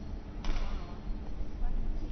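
A badminton racket striking the shuttlecock once, about half a second in, a sharp crack over the murmur of the arena.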